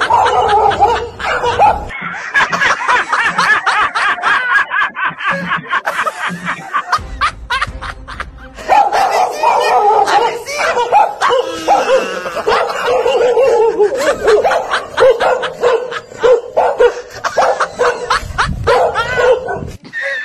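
Music mixed with rapid, repeated dog-like barks and laughter, typical of a comedy sound-effect track. The calls run loud and dense, with a short lull about seven seconds in.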